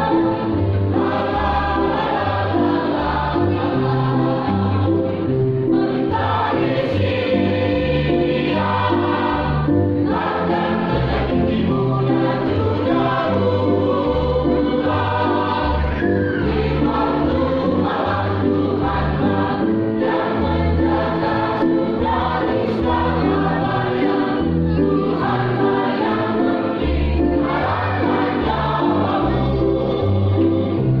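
Mixed church choir of women and men singing together in harmony.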